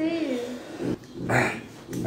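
A person's voice without clear words: a drawn-out vocal sound falling in pitch, then a short breathy burst about a second and a half in.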